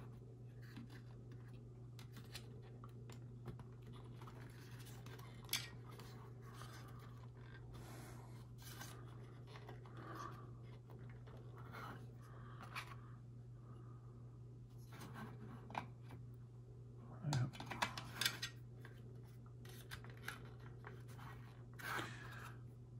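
Plastic model-kit fuel-tunnel rods being handled and pressed into their sockets in the thrust structure: faint scratching and scattered small clicks, busier about three-quarters of the way through, over a steady low hum.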